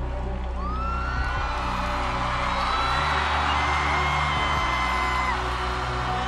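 Electronic pop backing music with a steady low synth bass, and an audience cheering and whooping over it, swelling up about half a second in and dying down near the end.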